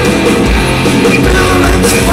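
Heavy metal band playing live and loud: distorted electric guitars over bass and a pounding kick drum, recorded from within the crowd.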